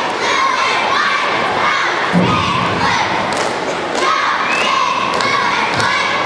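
Many young girls' voices shouting and cheering together in a large hall, with a dull thud about two seconds in.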